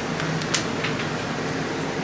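Steady room hum with a few light clicks, the sharpest about half a second in, from a small hard-sided trunk with brass corners and clasp being closed and handled.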